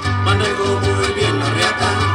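Huasteco trio playing an instrumental passage of a son huasteco: violin melody over strummed jarana and huapanguera, with a steady pulsing bass.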